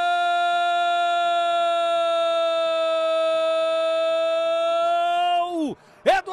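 Brazilian football commentator's goal cry: one long "Gooool!" held on a single high pitch. About five and a half seconds in, the pitch falls and the cry breaks off.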